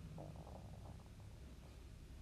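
Near silence: faint, steady low room hum in a pause between spoken words.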